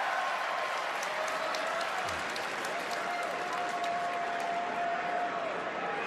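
Arena crowd applauding in a steady wash of clapping, with one long held call from the crowd standing out about halfway through.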